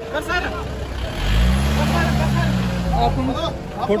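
A van ambulance's engine revs up and drops back over about two seconds, starting a second in, with men's voices around it.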